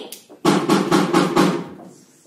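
A rapid burst of about eight loud drum strikes in just over a second, starting about half a second in and trailing off. They are played as a stage gunshot effect as the bed is fired on.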